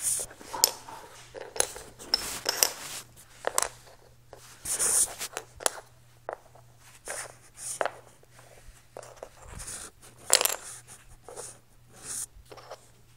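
Dominoes being set down one at a time on a wooden floor: irregular short clicks and brief scraping rustles of handling, coming every second or so.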